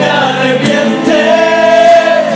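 Live music: a man singing into a microphone over acoustic guitar, ending in one long held note.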